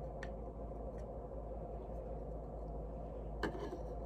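Quiet room tone with a steady low hum, broken by three faint light ticks; the last, about three and a half seconds in, is the loudest.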